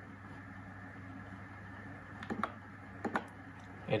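Two pairs of short clicks from a computer mouse button as menu items are selected, about two and a quarter and three seconds in, over a low steady hum.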